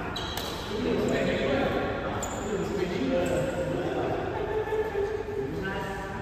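Badminton rally in a large hall: several sharp racket-on-shuttlecock hits, with footwork and players' voices on the court between them.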